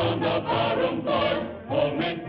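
A chorus singing a sing-along song line by line, with musical accompaniment underneath.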